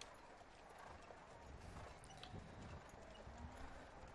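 Near silence with faint hoofbeats of harness horses.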